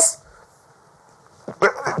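A man's voice: a word trails off at the start, then about a second of quiet room tone, and speech resumes near the end.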